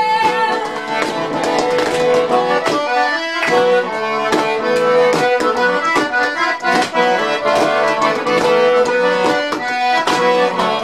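Live folk band playing an instrumental passage, the accordion carrying the tune over a steady rhythmic accompaniment.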